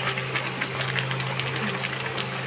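Mango pieces simmering in jaggery syrup in a metal karahi, the thick syrup bubbling and crackling steadily, with a spatula starting to stir through it near the end. A steady low hum runs underneath.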